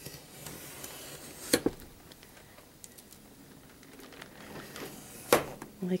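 Craft knife blade drawn along a metal ruler, slicing through the edge of a stack of watercolor paper in light, repeated strokes, with a faint scratching. A couple of sharp clicks come about a second and a half in, and another shortly before the end.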